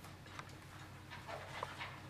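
Quiet meeting-room tone with a steady low electrical hum, and faint rustling and a few small clicks of handling near the microphones in the second half.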